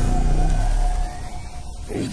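Logo intro sound effect: a deep rumble with a steady high tone over it. The rumble eases off about halfway through and the tone cuts out near the end.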